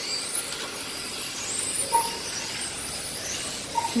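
Radio-controlled electric touring cars racing, their motors giving high-pitched whines that rise in pitch as the cars accelerate out of the corners.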